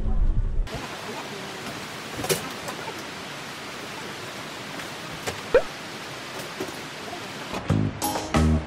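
A low vehicle rumble cuts off in the first second, giving way to a steady, even outdoor hiss with a few faint clicks and one short squeak. Music with a beat comes in near the end.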